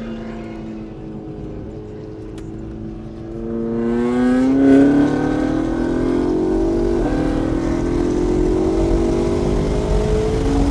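McLaren MP4-12C's twin-turbo V8 heard from inside the cabin on a track lap: running fairly steadily for about three seconds, then pulling harder, louder and rising in pitch as the car accelerates, with a brief break about seven seconds in.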